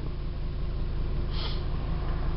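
Steady low hum inside a stationary car with its engine running, with one short breathy hiss, like a sniff or breath, about one and a half seconds in.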